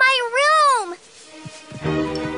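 A high-pitched cartoon voice giving a short two-part whimpering wail, the pitch rising and then falling, within the first second. Background music comes in near the end.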